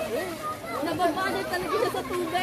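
Indistinct chatter of many people talking at once, their voices overlapping.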